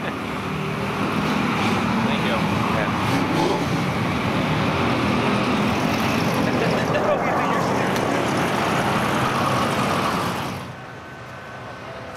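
Race car engine running loud and steady nearby, under some talk and laughter, ending abruptly about ten and a half seconds in.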